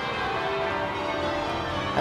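Church bells ringing changes, many bells overlapping in a steady peal.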